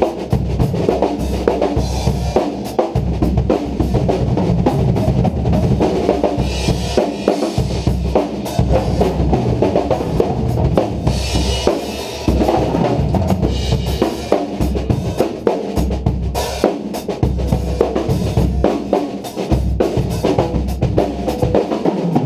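Two acoustic drum kits played together in a fast, steady groove: bass drum, snare and toms, with bright bursts of cymbal every few seconds.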